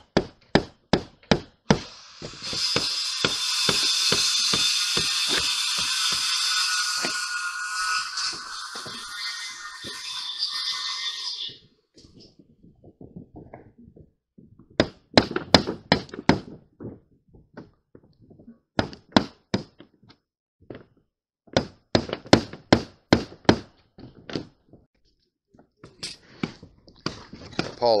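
Hammer tapping a screwdriver through an old mobile home roof covering, punching probe holes to find the rafters: runs of sharp, quick taps with pauses between them. For about ten seconds near the start, a loud, steady hiss of unclear source covers the taps.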